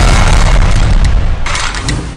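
A loud, deep boom sound effect that holds for about a second and then slowly fades, with a short burst of hiss about one and a half seconds in.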